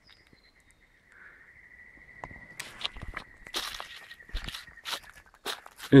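Footsteps crunching through leaf litter and twigs, irregular and getting busier from about two and a half seconds in, over a faint steady high whine.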